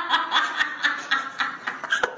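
A person laughing: a rhythmic snicker of short, pitched bursts, about four a second, easing off toward the end.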